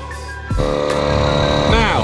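Background music, then about half a second in a louder steady mechanical running sound comes in: an air pump inflating the boat's tubes. A man's voice starts near the end.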